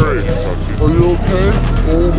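Soundtrack music: a vocal line with bending, chopped phrases over a steady deep bass.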